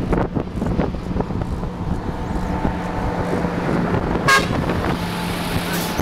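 A heavy vehicle's engine running steadily as it comes up behind the bicycle, with wind and road rumble on the microphone. A short high-pitched toot sounds a little past four seconds in.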